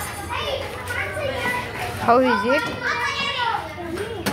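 Young children's voices, chattering and calling out in a high pitch, with one call that swoops down and back up about two seconds in.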